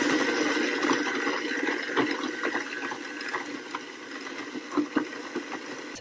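Countertop blender running, pureeing canned clam chowder into a liquid. The motor noise slowly gets quieter, with a few sharp clicks and knocks in the second half.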